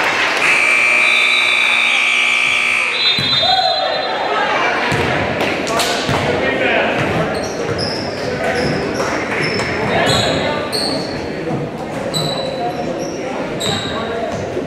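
Gymnasium scoreboard buzzer sounding steadily for about two and a half seconds and cutting off, then the echoing chatter of the crowd and players, a basketball bouncing on the hardwood, and short high squeaks.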